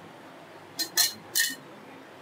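Three short clinks in quick succession, starting almost a second in: a kitchen utensil knocking against a bowl while ganache is layered on a cake.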